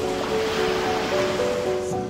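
Background music, a slow melody of held notes, over a loud rushing noise like surf that cuts off abruptly at the end.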